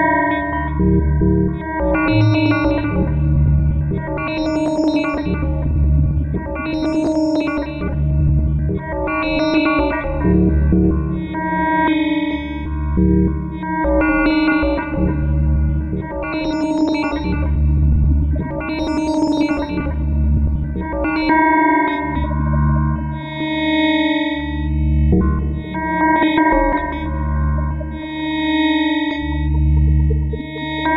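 Electronic music synthesised live by the Fragment software synthesizer, with an echoing delay on the notes. A low pulse repeats a little less than once a second, bright notes flare about every two seconds, and the sound settles into longer held chords in the last third.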